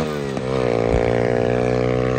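A 125cc single-cylinder four-stroke dirt bike engine pulling hard on a top-speed run. Its note drops sharply right at the start, then climbs slowly and steadily as the bike gathers speed.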